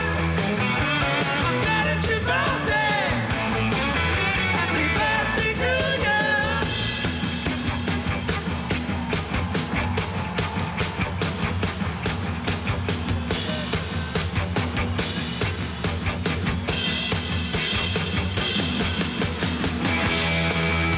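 Live rock band playing loudly: a singer over drums, bass and guitar for about the first six seconds, then an instrumental stretch driven by fast, steady drumming.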